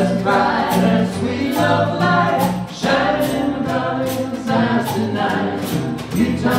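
Vocal group singing a song in close harmony, with light percussion keeping the beat.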